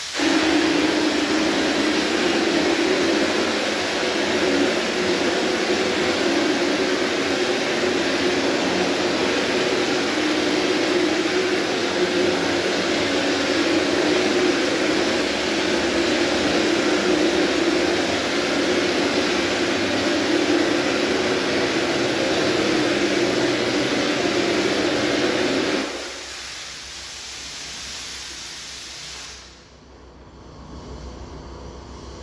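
Drywall texture spray gun spraying continuously: a loud, steady hiss of air and material with a low hum under it. The spraying stops about 26 seconds in, and a quieter hiss runs on until it cuts off near the end.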